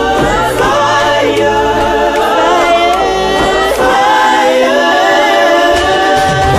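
Music track of choral singing: several voices hold long notes that slide up and down, with a low bass note under them for the first two seconds.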